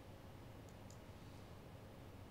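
Near silence: faint room tone with two faint clicks close together, under a second in, from the button of a handheld presentation remote being pressed to change slides.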